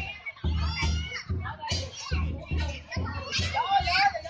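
Lion-dance drum beating in rolls broken by short pauses, with children's high voices shouting and calling over it.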